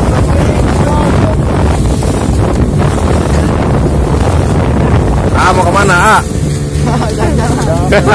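An outrigger boat's motor running steadily under way, with wind buffeting the microphone and water rushing and splashing along the hull. Voices call out briefly about five and a half seconds in and again near the end.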